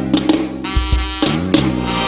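Live forró band with horns, keyboard, drum kit and bass guitar playing a held chord, which breaks off at a heavy drum hit about a second in before the beat and bass line pick back up.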